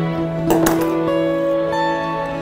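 Background music: plucked string notes ringing over a held low note, with a new note coming in every half second or so.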